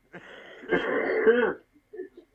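A man clearing his throat: a soft breathy rasp, then a louder rough throat sound lasting under a second.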